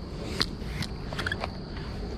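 A few light clicks and knocks over a steady background hiss, the loudest about half a second in: a rusty iron pitching horseshoe being handled and pulled off a magnet-fishing magnet.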